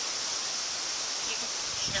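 Steady outdoor background hiss with no distinct events, brightest in the upper range.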